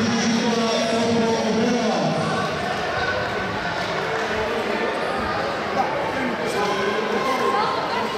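People talking in a large, echoing hall, with a few dull thumps about halfway through.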